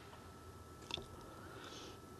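Quiet, with the faint sound of a small lighter flame burning against the cut end of a nylon paracord to melt it: one small click about a second in and a faint short hiss near the end.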